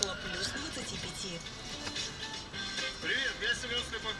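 Car radio playing: a presenter's voice over background music.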